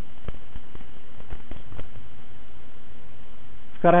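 A pause in a man's talk: low room noise with a few faint scattered clicks, then his voice resumes near the end.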